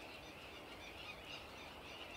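Faint outdoor background with distant birds calling.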